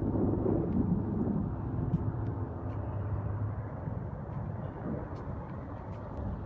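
Outdoor city ambience: a low, steady rumble that slowly fades, with a few faint ticks.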